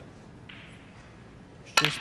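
Quiet snooker arena, then a sharp click of a snooker shot near the end, the cue striking the cue ball.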